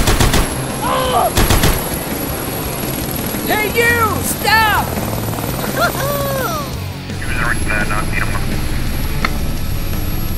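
Added toy-helicopter sound effect: a steady low rotor hum, with a few sharp shots near the start and again about a second and a half in, and several short cries that rise and fall in pitch.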